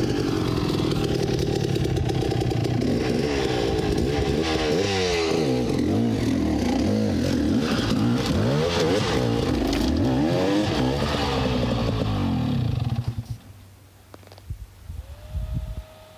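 Husaberg dirt bike engine revving up and down over and over as the rider works it up a rocky trail section. About thirteen seconds in the loud engine sound drops away sharply, leaving only a faint engine.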